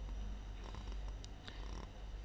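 A steady low hum with a few faint, short clicks.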